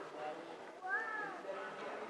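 A child's short, high-pitched, meow-like call that rises and falls once, about a second in.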